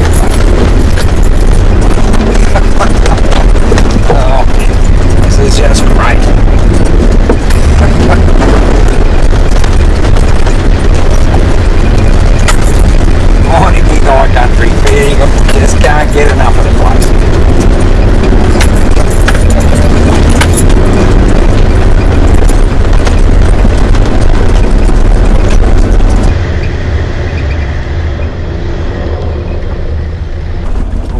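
A Nissan Patrol 4WD climbing a rough gravel track, heard from an outside-mounted camera. There is a heavy, steady low rumble of engine and wind on the microphone, with knocks and rattles as the tyres go over rocks. Near the end the sound turns quieter and duller.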